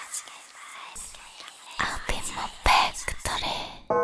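Breathy whispered vocals with almost no music under them, coming in louder bursts over the second half. The full musical backing comes back in right at the end.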